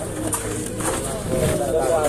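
People talking close by, voices that rise and fall and get louder in the second half.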